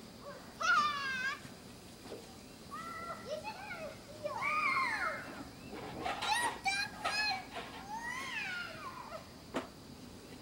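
Young children's high-pitched, wordless calls and squeals while playing in the snow, in several separate bursts, the loudest about a second in. A single sharp click comes near the end.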